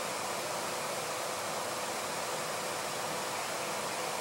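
Steady, even hiss of background noise with a faint constant hum, unchanging throughout.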